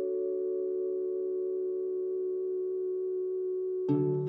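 A held chord of several steady, pure electronic tones from a logo jingle, sustained without change. Just before the end a louder music track with plucked notes comes in suddenly.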